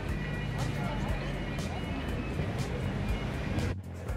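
Busy street ambience: crowd voices and music over a steady low rumble of traffic. The sound drops out briefly near the end.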